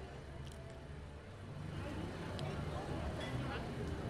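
Background chatter of other people talking over a low, steady rumble, getting somewhat louder about halfway through.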